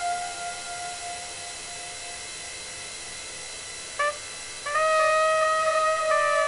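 Solo cornet playing long held notes: a sustained note fades away over the first couple of seconds, a brief note sounds about four seconds in, then a new, slightly lower note is held strongly to the end.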